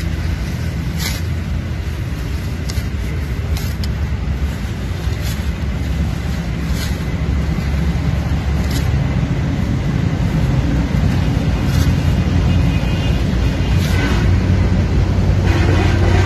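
A steady low rumble that grows louder toward the end, with a few faint scattered ticks as a hand sickle cuts through spinach stems.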